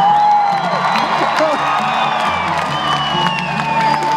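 Amplified cellos playing live, with long held melody notes that slide up and down over a sustained low line, heard over crowd voices and scattered cheers.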